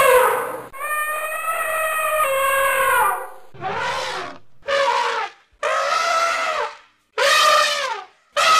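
Elephants trumpeting: loud, shrill calls, one long drawn-out call followed by four shorter ones about a second apart. These are the distress calls of an elephant whose trunk is seized by a crocodile.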